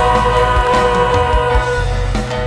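Live church worship band and singers performing a Mandarin praise song, a long note held and then fading near the end.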